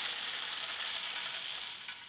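Roasted coffee beans pouring and tumbling over one another: a dense, even rattle of many small hard beans that fades away steadily, with a faint click near the end.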